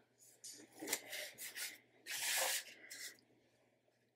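Paper stickers being handled and pressed down onto planner pages by hand: several soft, short rustles and rubs of paper over the first three seconds.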